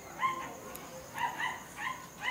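A dog giving about four short, high yips in quick succession.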